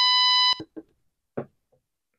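FG-200 DDS function generator's 1 kHz sinc waveform played through an audio amplifier: a steady tone with many overtones, which cuts off abruptly about half a second in as the output is stopped.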